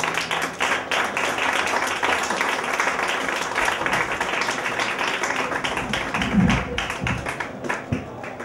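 Audience applauding, many hands clapping at once, starting abruptly and thinning a little near the end, with a brief low sound about six seconds in.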